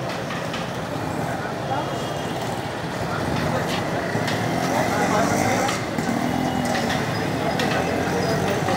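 Busy street ambience: background voices of people talking, mixed with motor traffic running.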